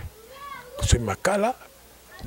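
A short burst of speech, preceded by a faint high cry that rises and falls once in pitch.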